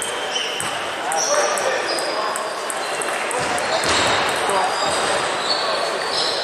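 Reverberant sports-hall ambience during a table tennis tournament: scattered sharp clicks of celluloid-type table tennis balls hitting bats and tables at neighbouring tables, short high squeaks of shoes on the hall floor, a few dull thumps, and background chatter.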